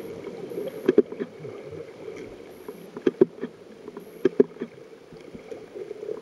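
Underwater ambience picked up by a submerged camera: a steady muffled rush of water with sharp clicks, several in quick pairs, about a second in, at three seconds and again past four seconds.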